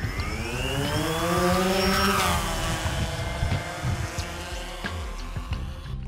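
DJI Phantom quadcopter's motors whining, rising in pitch for about two seconds and then falling slowly.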